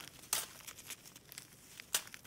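Small plastic zip-lock bags of diamond-painting drills crinkling as they are handled. There is a sharper crinkle about a third of a second in and another, the loudest, near the end.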